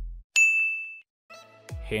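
A single bright electronic ding sound effect: one high ringing tone that strikes suddenly and fades out within about two-thirds of a second. It comes just after the tail of background music dies away.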